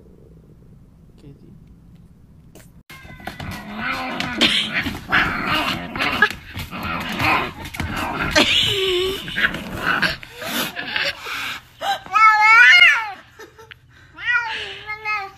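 Domestic cat growling and yowling in protest: a loud, rough run of growls from about three seconds in, ending in a long wavering yowl near the end.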